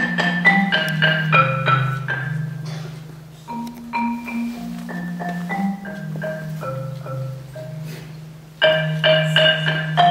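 Concert marimba played solo with mallets: quick runs of struck wooden-bar notes over held low bass notes. Phrases come in bursts, with short breaks about three seconds and eight seconds in, and a louder phrase starts near the end.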